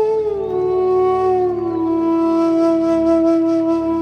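Bansuri bamboo flute music: one long breathy held note that slides down in pitch over the first two seconds and then holds steady. Underneath it a low drone sounds without change.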